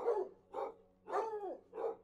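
A dog barking: four short barks spread over two seconds.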